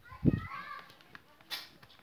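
A young child's short high voice in the first second, over a low thump, the loudest sound, just after the start; a sharp click follows about a second and a half in.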